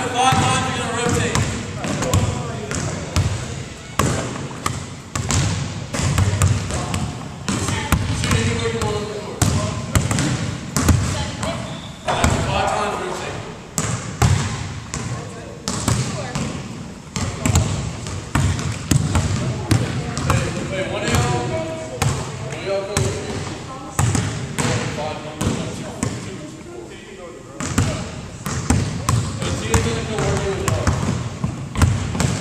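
Basketballs bouncing on a hardwood gym floor: an irregular run of sharp bounces from dribbling and shots, with people talking in the background.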